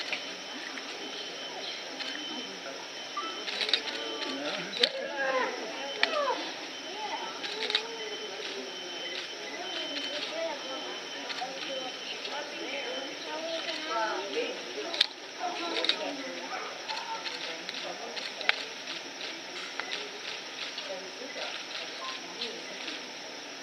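Indistinct chatter of a crowd of onlookers, with a few sharp clicks scattered through.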